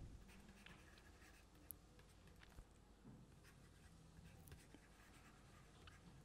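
Near silence with a few faint ticks and short scratches of a stylus writing on a tablet.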